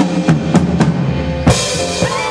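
Big band's drum kit playing a fill of accented bass drum and snare hits over the band, with several hits in the first second and the loudest about one and a half seconds in, leading back into a held band chord at the end.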